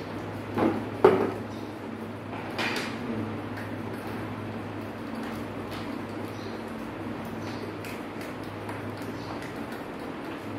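Small knocks and clicks of hand tools and plastic wiring fittings handled on a wooden workbench, a few in the first three seconds with the sharpest about a second in, over a steady low hum.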